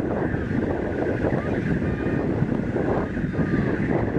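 Steady wind buffeting the microphone, a rough, low rumbling noise.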